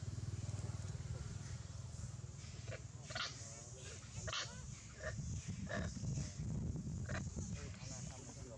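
Long-tailed macaques giving a run of short, high calls, about five of them starting some three seconds in, over a steady low rumble.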